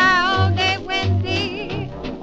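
1930s big band swing recording playing: a held, wavering melody line over a bass that steps from note to note.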